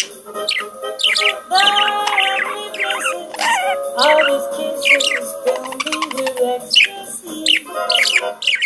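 Pet budgerigar warbling and chirping along with recorded music: a running stream of quick, sharply falling chirps, several a second, mixed with chattering warble.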